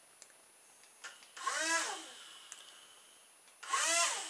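The small electric propeller motors of a toy RC air boat whir in two short bursts about two seconds apart as the boat is steered. Each burst swells quickly and dies away.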